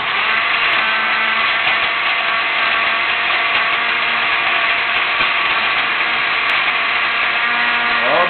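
Countertop blender running steadily, blending a green smoothie of kale, frozen huckleberries, bananas and oranges.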